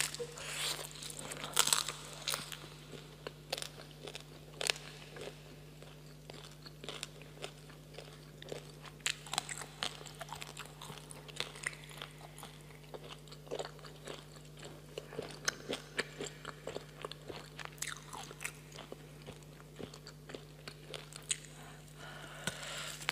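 Close-miked biting and chewing of roasted meat: irregular crunches and wet clicks of the mouth working, over a steady low hum.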